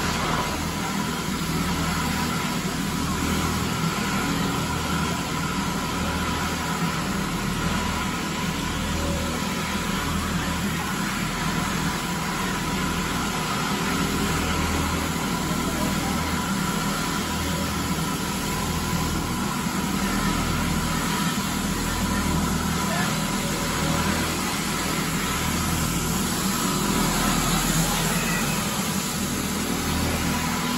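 Advance SC750 walk-behind floor scrubber running as it scrubs: a steady motor drone with a thin, even whine over it and a low hum that wavers slightly.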